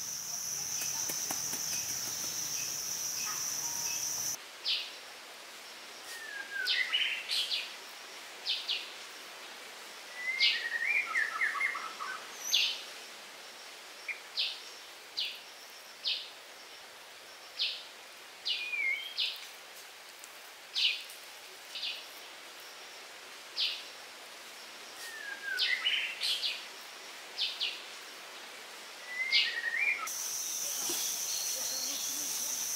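A steady high insect drone for the first four seconds or so, cut off abruptly. Then birds call: short sharp chirps about once a second, mixed with a few whistled notes that slide down in pitch.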